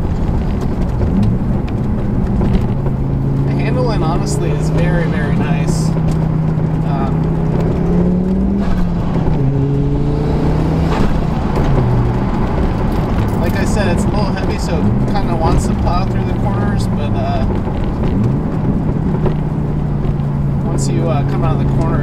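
Audi urS4's turbocharged 2.2-litre five-cylinder engine heard from inside the cabin, pulling through the gears under load. Its note climbs steadily, then drops sharply at each gear change, about three times.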